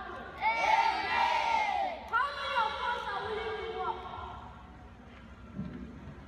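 Many children's voices shouting together in two loud stretches, each about a second and a half long, then dropping away to a quieter murmur near the end.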